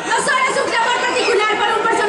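A woman speaking Spanish into a microphone, her voice amplified over a public-address system.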